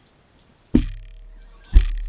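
Two loud thumps about a second apart, the second louder, each followed by a low boom that dies away over about a second; a faint ringing tone hangs after the first.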